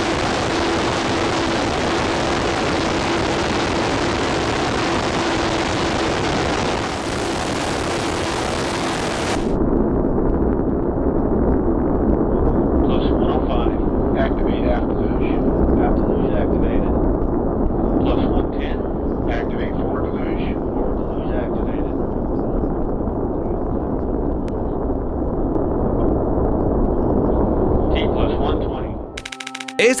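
Large solid rocket booster firing on a horizontal test stand: a loud, steady roar. About nine and a half seconds in it changes to a deeper rumble heard from a distance, with onlookers' voices over it.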